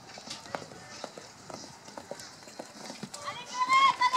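Hoofbeats of a horse cantering on an arena's sand footing, then near the end a loud, high-pitched human voice calling out in short bending bursts.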